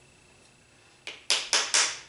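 Four quick, sharp taps about a second in, from a hand handling a small wooden block plane, after a near-silent first second.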